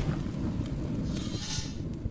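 Rumbling tail of a logo-intro sound effect after a deep boom, dying away slowly.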